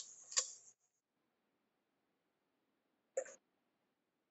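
Two short, sudden noises from a person's microphone carried over a video call, one right at the start and one about three seconds later, with near silence between them.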